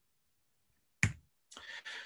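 A single sharp click about a second in, after a second of silence, followed by a faint breath.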